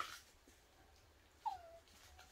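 A dog whimpering faintly: one short whine falling in pitch about one and a half seconds in, after a brief sharp sound at the start.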